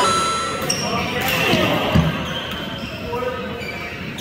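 Players' voices on court between badminton rallies, with a single sharp thud about two seconds in.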